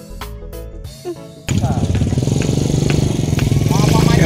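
Background music with a beat, cut off abruptly about a second and a half in by a loud, steady low engine hum. A man's voice starts near the end.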